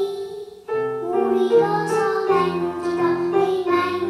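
A young girl singing into a microphone over a recorded musical backing track, with a brief dip in the sound about half a second in before the song carries on.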